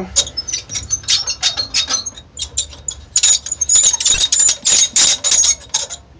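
Dry, ungreased crank handles on a milling machine's rotary table squeaking over and over as they are turned: a rapid, irregular run of short high-pitched squeals of metal rubbing on metal, wanting grease.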